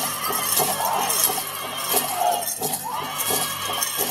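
Powwow drum group playing a grass dance song: a big drum beaten steadily under high, wavering group singing, with the jingle of the dancers' bells.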